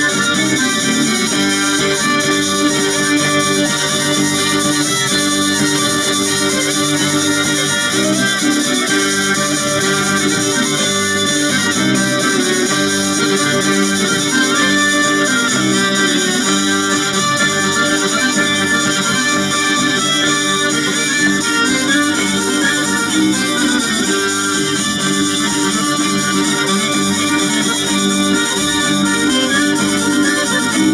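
Live Occitan folk music: hurdy-gurdy, button accordion and acoustic guitar playing a tune together over a steady held drone, with a violin also heard.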